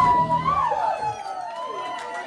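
The band's last chord rings out and fades away within about a second. Over it come several high, wavering whoops that glide up and down: audience cheering at the end of the song.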